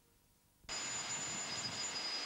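After near silence, a steady outdoor hiss of seaside background noise on a camcorder microphone cuts in suddenly about two-thirds of a second in, with two thin, steady high-pitched whines over it.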